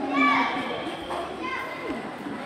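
Children's voices in a group: high-pitched chatter and calls, loudest in the first half-second.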